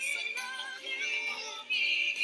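Female vocalist singing a Filipino song live with instrumental accompaniment, holding long notes that slide in pitch.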